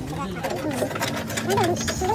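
High-pitched voices talking in the background, with a run of light clicks and rattles.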